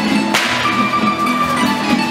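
Live Spanish traditional folk dance music: strummed and plucked guitars under a held melody line. A single sharp percussive strike rings out about a third of a second in.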